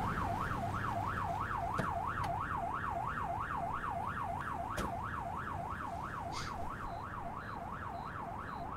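Police car siren in a fast up-and-down yelp, about two and a half sweeps a second, slowly fading.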